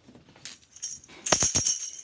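A tambourine's metal jingles rattle faintly as it is picked up, then from a little over a second in it is shaken and struck in a quick beat, the jingles ringing brightly with each stroke.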